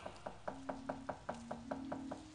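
Dalang's wooden cempala knocking on the kotak (the wooden puppet chest) in a quick, even run of light knocks, about five a second, with a faint low held tone underneath.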